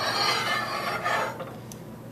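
Metal ring-stand base scraping as it is slid across a lab bench top, a rough rubbing scrape with a slight squeal that fades out after about a second.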